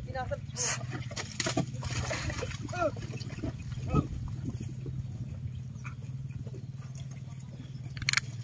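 Short shouted calls from men urging on a carabao that is hauling a sack-laden cart through deep mud, over a steady low hum with scattered knocks. The loudest call comes about four seconds in, and the last few seconds are quieter.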